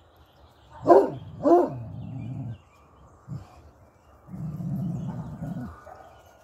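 A hound barking twice in quick succession about a second in, then a low growl. A short woof follows, and a longer low growl comes near the end, aimed at an unfamiliar Easter basket it is wary of.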